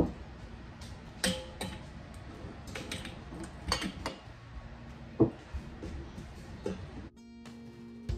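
A metal spoon and tamper clinking and knocking against a stainless steel strainer and canning funnel as shredded cabbage is packed into glass jars, a sharp clink every second or so. About seven seconds in, background guitar music starts.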